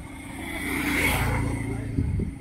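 A motor vehicle passing by: engine and road noise swell to a peak about a second in and then fade.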